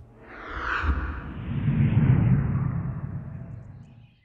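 A whoosh sound effect with a deep rumble underneath. It swells for about two seconds and then dies away.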